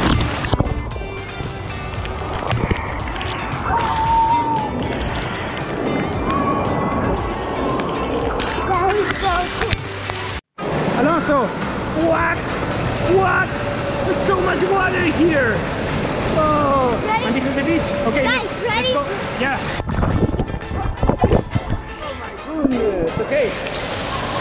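Water park din: many voices shouting and chattering over splashing water, with music playing. The sound cuts out for an instant about ten seconds in.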